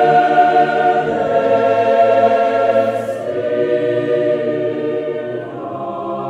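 Mixed choir singing a cappella, holding long sustained chords that move to a new chord near the end.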